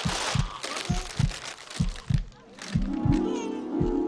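Heartbeat sound effect: paired low lub-dub thuds, about one beat a second, throughout. Music comes in under it about three seconds in.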